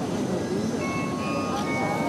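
Carillon bells struck from the baton keyboard. A few bell notes sound about a second in and ring on as clear, sustained tones over a dense low background noise.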